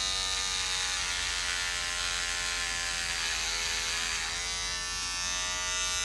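Electric hair clippers buzzing steadily while cutting hair, the pitch sagging slightly for about a second around the middle as the blades work through a thick patch.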